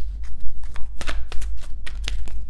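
A deck of oracle cards being shuffled by hand: an irregular run of quick card snaps, about five a second, over a steady low hum.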